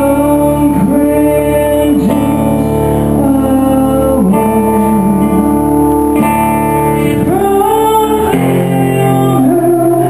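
A woman singing live while playing an acoustic guitar, her voice holding and sliding between long notes over the guitar's chords.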